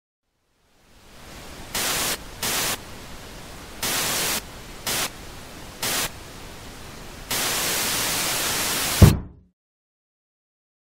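Television static hiss fading in, surging louder in five short bursts, then holding loud for nearly two seconds before ending in a short low thump and cutting off.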